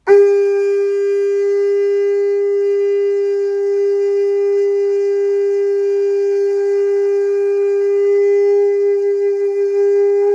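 Conch shell trumpet blown in one long, steady note, held without a break for about ten seconds and swelling slightly near the end.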